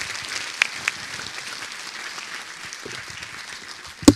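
Audience applauding at the close of a talk, the clapping slowly dying down.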